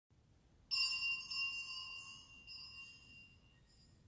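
A small cluster of church bells rung sharply about a second in, with a few more jangles as the ringing fades. It is typical of the sacristy bell that signals the start of Mass.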